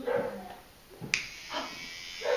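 A click about a second in as a battery-powered children's toothbrush is switched on at its button, then the brush's small motor buzzing steadily.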